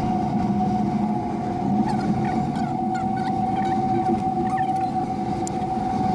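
Cable car gondola in motion, heard from inside: a steady, unchanging high whine over a low rumble from the haul rope and running gear.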